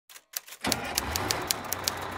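A quick series of sharp clicks, about six or seven a second, over a steady low hum that sets in just under a second in, after a few scattered clicks.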